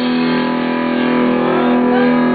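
A distorted electric guitar chord held and left to sustain, a steady ringing tone with the drums silent.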